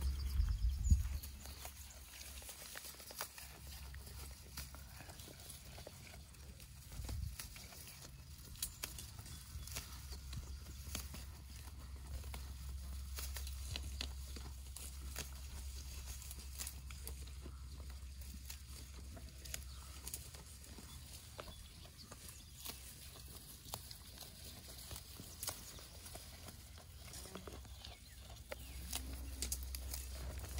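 Goats browsing close by: irregular snaps and crunches as grass and weed stems are torn off and chewed, with rustling of the tall grass, over a steady low rumble. A louder burst comes about a second in and another around seven seconds.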